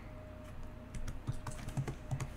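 Computer keyboard typing: a short run of soft, light keystrokes starting about half a second in.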